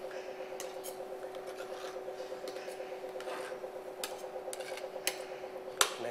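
Chocolate tempering machine running with a steady hum that flutters quickly and evenly. Over it come scattered scrapes and taps of a scraper and chocolate mould, with a sharper knock near the end.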